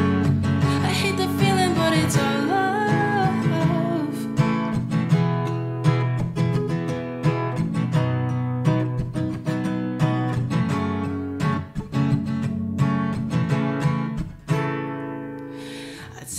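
Acoustic guitar strummed in a steady rhythm, with a solo male voice singing a held, wavering line over the first few seconds. The guitar then plays on alone, dipping briefly about fourteen and a half seconds in before picking up again.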